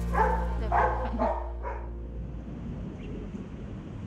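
A medium-sized tan-and-black dog giving about four short barks in quick succession in the first two seconds, then quiet outdoor background.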